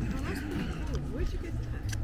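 Voices talking quietly, too faint to be made out as words, over a low steady outdoor rumble.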